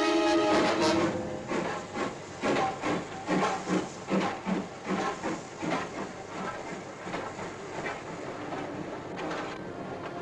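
A steam train running over a railway viaduct, with a rhythmic beat of about two or three a second that fades after about six seconds into a steady rumble. Orchestral score ends about a second in.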